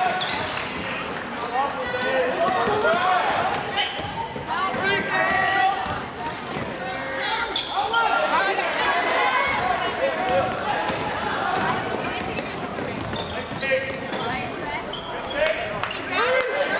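A basketball bouncing on a hardwood gym floor during play, with many voices talking and calling out from players and spectators in a large, echoing gym.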